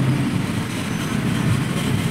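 Steady background rumble with a low hum, like a running machine.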